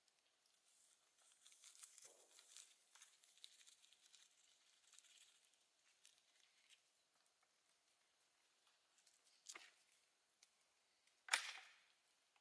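Faint rustling and crackling of a paper cartridge being handled and torn while loading an M1819 Hall breech-loading flintlock rifle. Then a soft click about nine and a half seconds in and a sharper metallic snap from the rifle's mechanism near the end.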